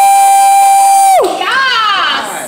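A person's loud, long whoop of cheering held at one high steady pitch, breaking off a little past the middle, followed by a shorter whoop that slides down in pitch.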